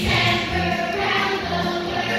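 Music with a choir of voices singing over a steady bass beat of about two pulses a second.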